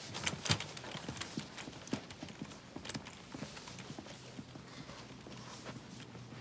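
Irregular footsteps and light knocks on a hard floor, a few a second, over a steady low hum.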